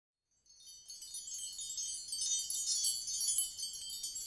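Wind-chime flourish opening an intro jingle: many high, tinkling chime tones layered densely together, starting about half a second in and building in loudness.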